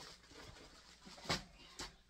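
Soft rustling and handling noise from a person reaching for and picking up items at a table, with a sharp knock a little over a second in and a lighter one near the end.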